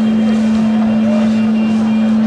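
Steady electrical hum at one low pitch over a constant hiss, from the stage public-address sound system while the microphone is live and no one is speaking.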